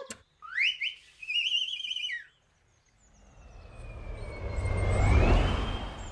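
Whistle sound effects: short rising toots, then a warbling trill. About three seconds in, a whoosh with a deep rumble swells for about two seconds and fades, while a thin whistle tone glides down and back up over it.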